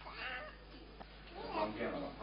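Faint, high-pitched voice of a small child making short vocal sounds, twice, with quiet gaps between.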